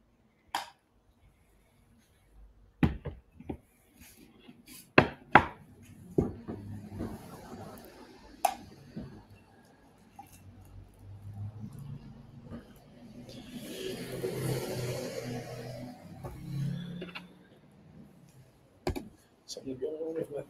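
Scattered sharp knocks and clicks, the loudest a little after five seconds in, with low indistinct voices and a hiss rising in the middle stretch.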